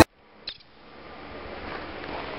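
Background music cuts off abruptly, then faint outdoor ambient hiss slowly fades in, with one short click about half a second in.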